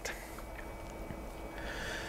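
Faint steady low hum over quiet room noise, with a short breath near the end.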